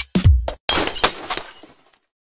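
Electronic intro music with a kick drum about twice a second, cut off about half a second in by a glass-shattering sound effect that crashes and fades away over about a second.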